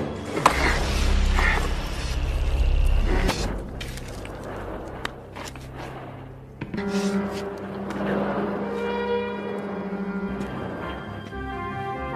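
Film soundtrack: a sharp knock and a heavy low rumble in the first few seconds, scattered clicks, then music with steady held notes entering suddenly a little past the middle.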